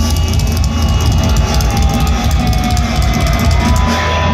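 Live heavy metal band playing loud, full band at once: drum kit with rapid cymbal hits over electric guitars and bass, recorded from within the crowd on a phone.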